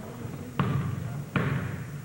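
Two heavy thuds on a wrestling ring's mat, about three-quarters of a second apart, each followed by a short low boom from the ring.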